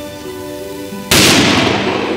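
A single rifle shot about a second in: one sharp, loud report with a fading echo tail, over steady background music.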